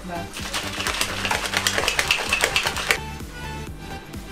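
Plastic protein shaker bottle being shaken hard to mix the shake, a fast rattling clatter of the liquid and mixer inside that stops abruptly near the end.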